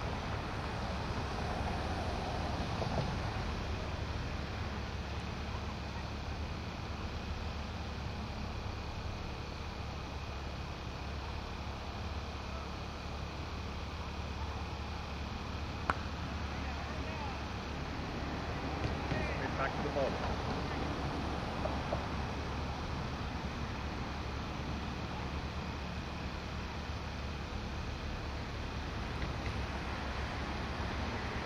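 Steady open-air field ambience with a low hum and faint distant voices. About halfway through, a single sharp crack of a cricket bat striking the ball.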